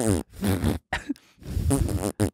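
A man's voice making drawn-out vocal noises that slide in pitch, in several bursts with short breaks between them: an attempt at imitating a sound.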